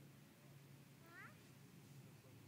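Shiba Inu giving one faint, short whine about a second in, over near silence.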